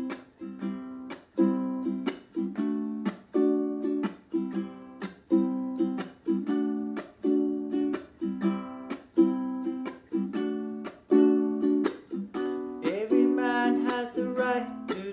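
Ukulele strummed in a steady reggae rhythm of short, sharply struck chords that die away quickly. A man's singing voice comes in near the end.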